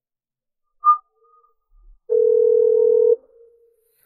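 Telephone ringback tone heard on the caller's phone: one steady ring of about a second, meaning the called phone is ringing. A short high beep comes about a second earlier.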